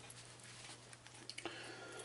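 Quiet room tone with a steady low hum and a few faint clicks.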